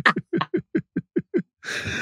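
A woman laughing hard in a quick run of short 'ha' bursts, about six a second, each dropping in pitch. About a second and a half in, the run ends in a long, wheezy, gasping breath in.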